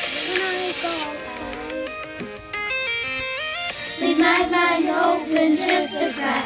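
Pop song with children singing over a synth backing. A quick run of stepped synth notes comes in the middle, then the singing returns.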